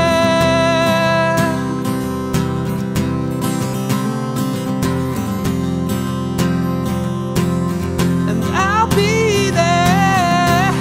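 Acoustic guitar strummed with a man singing live: a held sung note at the start, then several seconds of guitar strumming alone, and the voice coming back near the end.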